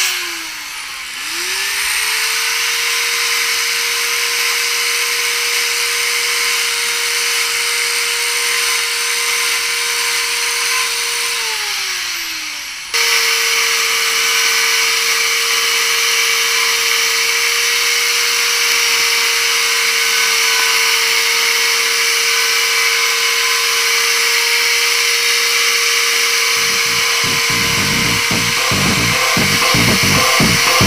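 Two-stroke Stihl chainsaw running at a steady high rev; about a second in the note drops as the throttle eases and then climbs back. Near the middle it drops off again before cutting back abruptly to the same steady high rev.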